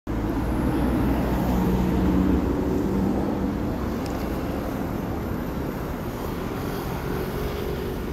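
Jet airplane passing low overhead: a steady engine rumble with a faint hum. It is loudest in the first two or three seconds and then slowly fades.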